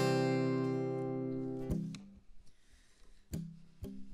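A single strummed chord on a capoed Takamine steel-string acoustic guitar, ringing and fading for under two seconds before it is muted. After that it is almost quiet, with two short knocks.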